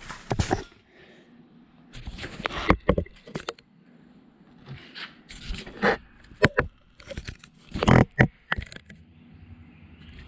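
Scattered knocks, clicks and short scrapes of metal engine parts being handled on a workbench as a camshaft with its timing gear is picked up and turned over. The loudest knocks come about 3, 6 and 8 seconds in.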